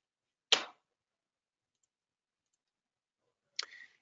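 Near silence in a small room, broken by a single short click about half a second in and a brief faint rustle just before speech resumes near the end.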